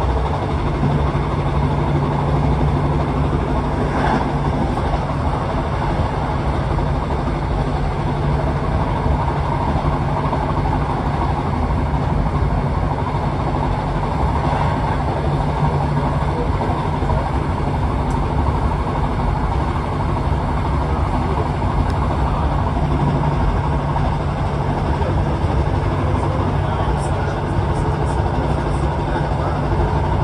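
Steady running noise inside a moving passenger train: a low engine hum under the rumble of the wheels on the rails, unchanging throughout.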